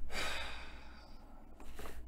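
A person sighing: a breathy exhale lasting about a second, followed by a short breath near the end.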